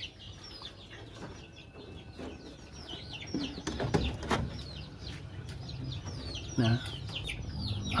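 Chicks (kampung chickens) peeping steadily: many short, high calls, each falling in pitch. A light rustle of a plastic tarpaulin sheet being handled comes in near the middle.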